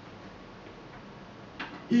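Faint steady hiss of a quiet recording, then a brief breath-like noise and, right at the end, a low female voice starting to sing a held note.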